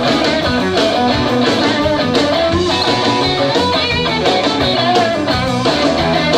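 Live blues band playing an instrumental passage: electric guitar over bass and drums, with no singing.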